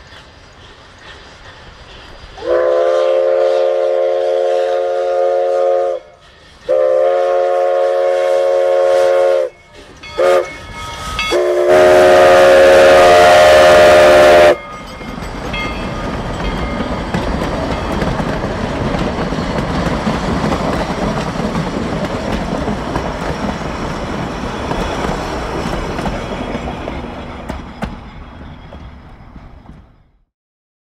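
Denver and Rio Grande 425's chime steam whistle sounds two long blasts, a short one, then a final long and loudest blast: the grade-crossing signal. Then the narrow-gauge passenger cars roll past with a steady rumble and wheel clatter that fades away near the end.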